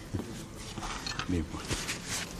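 Quiet studio room tone with a brief murmured voice a little past the middle.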